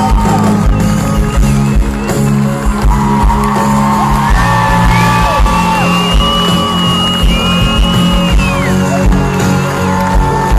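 Live pop band playing a slow song through a stadium sound system, recorded from within the crowd, with long held notes over a steady bass.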